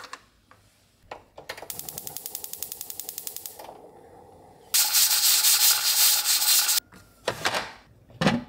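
Gas stove igniter clicking rapidly, about ten clicks a second for two seconds, as the burner under the pressure cooker is lit. A few seconds later comes a loud, steady hiss of steam venting from the aluminium pressure cooker's release valve for about two seconds, then a few short knocks.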